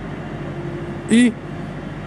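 Steady background hiss of room tone in a large hall, broken a little after a second in by one short spoken word.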